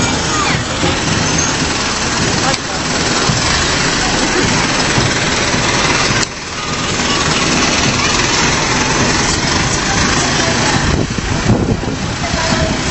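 Isuzu fire pumper truck driving slowly past at close range, its engine running, heard over a dense, loud mix of street noise.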